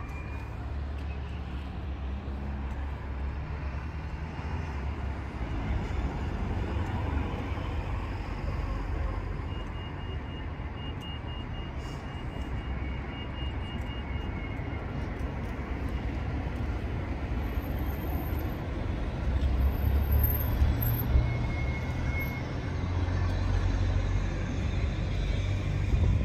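Steady outdoor rumble of wind buffeting the phone's microphone, with road traffic in the background; the rumble swells about two-thirds of the way through and again near the end.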